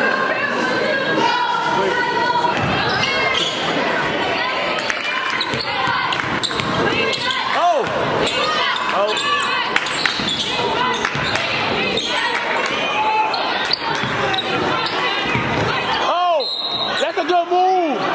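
Basketball game sound in an echoing gym: the ball bouncing on the hardwood under a steady mix of many voices from players, cheerleaders and spectators. A short, steady high referee's whistle sounds near the end, calling a foul, followed by a few louder shouted calls.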